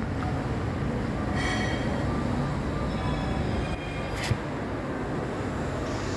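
Kansai coverstitch sewing machine running steadily on its electronic servo motor. A brief higher whine comes about one and a half seconds in, and a sharp click a little after four seconds.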